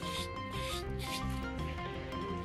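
A hand tool scratching along calfskin leather in short repeated strokes, about two a second, over steady background music.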